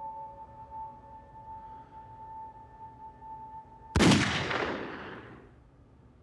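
A steady high ringing tone from the score, then a single loud gunshot about four seconds in. The shot cuts the tone off and dies away over about a second and a half.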